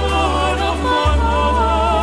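Slow pop-opera ballad: long sung notes with a wide vibrato over a steady low bass, moving to a new held note about a second in.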